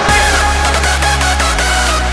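Rawstyle hard dance track: the full beat drops in right at the start, with a hard, distorted kick drum on a steady beat under heavy bass and a synth lead.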